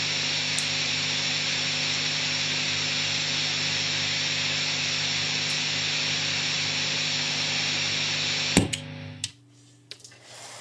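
Steady hum and hiss from a guitar rig with the T-Rex Karma boost pedal switched on: an unwanted noise that the pedal picks up, which the other pedals did not have and which the player wonders may come from a fan on the table. Near the end the footswitch clicks and the noise dies away within about a second.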